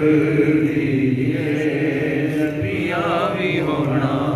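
A man chanting a naat, a devotional poem in praise of the Prophet, into a microphone, in long held melodic lines with a wavering ornament about three seconds in.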